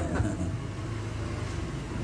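A steady low hum with a faint hiss over it, with no speech.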